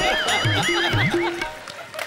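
A short comic music sting: a high warbling tone over two deep drum thumps about half a second apart.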